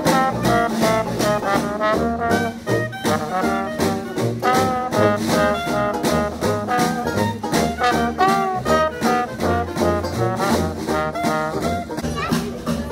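A live street jazz band playing upbeat swing: brass melody led by trumpet over a bouncing sousaphone bass line, with a strummed banjo keeping a steady beat.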